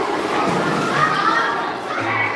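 Children's voices chattering in a large, echoing hall.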